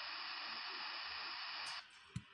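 Steady electronic hiss of recording noise, with no speech over it, which cuts off abruptly near the end.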